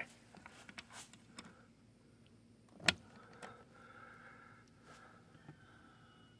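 Metal hasp on a wooden coop door being unlatched: a few light clicks, then one sharp metallic click about three seconds in, with the rest fairly quiet.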